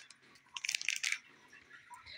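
A brief, crackly rustle lasting about half a second, starting about half a second in.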